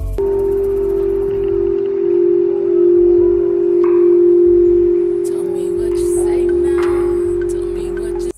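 A crystal singing bowl sounds one long, steady tone that swells around the middle.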